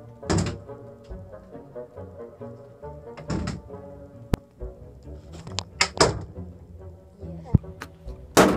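Plastic water bottles flipped onto a wooden shelf, landing with a few sharp thunks, over steady background music, with short excited shouts.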